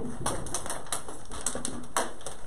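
Thin plastic water bottle crackling in the hand as it is drunk from and handled, a run of small sharp clicks with a louder click near the end.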